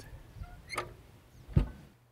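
Quiet background with a click and a couple of short faint tones in the first second, then one sharp thump about one and a half seconds in.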